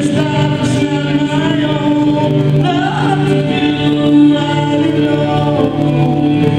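Live worship song: several women's voices singing together into microphones, with acoustic guitar and keyboard accompaniment, held notes gliding between pitches at a steady loud level.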